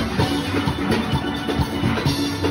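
A full steel orchestra playing: many steel pans ringing together in a fast, dense rhythm over a steady drum beat, heard from among the pans.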